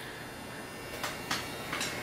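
Electric hair clippers buzzing faintly and steadily, with a few light clicks about halfway through.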